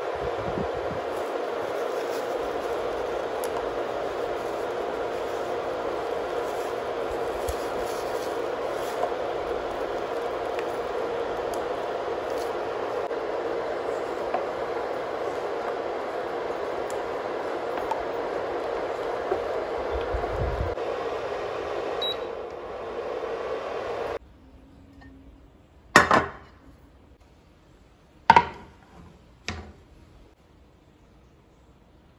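Induction cooktop running under a saucepan of milk, with a steady fan whir that cuts off suddenly near the end. Three sharp knocks follow, the first two the loudest.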